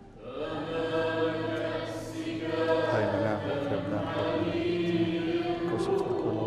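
Choir singing a slow liturgical chant in held notes, starting about a quarter of a second in.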